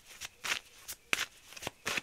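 A deck of oracle cards being shuffled by hand, with a quick run of short card snaps, about seven in two seconds.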